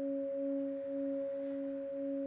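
Metal singing bowl sounding as a wooden striker is circled around its rim: a sustained two-note hum whose lower note wavers about twice a second.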